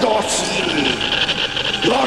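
Television sci-fi electric-bolt sound effect, a steady hissing crackle, with a voice trailing downward in pitch during the first second.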